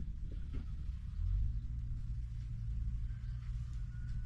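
Wind rumbling on the camera's microphone, a low buffeting that grows stronger about a second in and holds. A faint thin whistle-like tone appears near the end.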